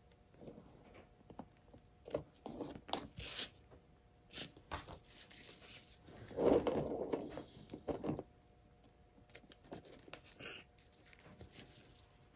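Faint handling sounds of latex-gloved hands working a wooden stick in wet acrylic paint on a wooden ornament: scattered light taps and scrapes with soft rustles, the loudest rustle about six and a half seconds in.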